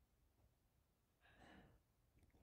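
Near silence: room tone, with one faint, short breath or sigh about a second and a half in.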